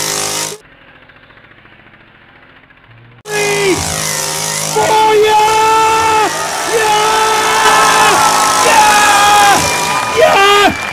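A chainsaw's small two-stroke engine running steadily, with long held, voice-like pitched calls over it that bend in pitch at their ends. From about half a second in until about three seconds in, the sound drops to a faint, muffled level, then comes back loud.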